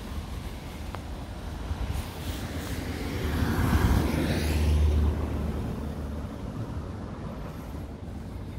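A van driving past close by on the street: its engine and tyre noise rises to a peak about four to five seconds in and then fades, dropping in pitch as it goes by.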